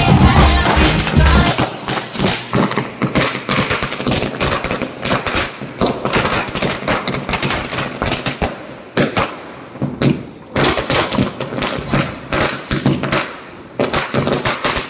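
A long string of firecrackers going off, a rapid, unbroken rattle of bangs, many a second, with a couple of short lulls in the second half before it carries on.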